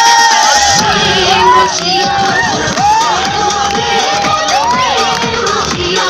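Audience cheering and shouting over dance music, with many short calls rising and falling in pitch.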